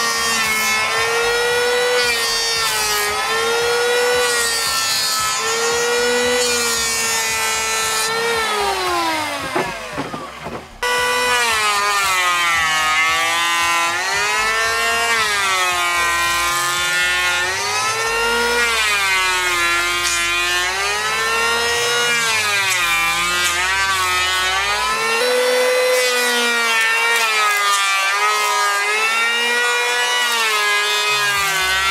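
Metabo HO 26-82 electric planer (620 W motor, two-knife cutter head up to 17,000 rpm) running and planing wood under load; its high whine dips and recovers in pitch about every two seconds as it takes each cut. About eight seconds in it winds down in a falling whine, and from about eleven seconds it is running and cutting again.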